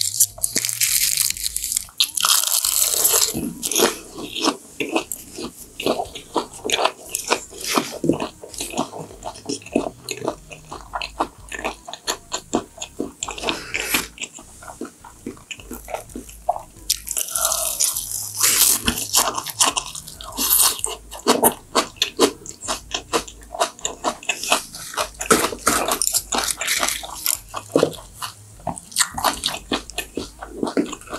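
Close-miked chewing and biting of raw yellowtail sashimi eaten in wraps of dried seaweed and fresh greens: crisp crunches and wet mouth sounds in irregular bursts, louder near the start and again past the middle.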